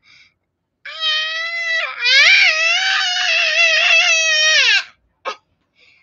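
A six-year-old girl's drawn-out whining cry in two long held stretches, the second about three seconds long with the pitch wavering up and down.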